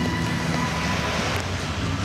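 Cab-over truck driving past close by on a wet road: engine noise and tyre hiss, loudest about a second in.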